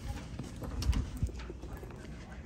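Footsteps of a person walking: a few irregular, soft footfalls and knocks, the strongest about a second in.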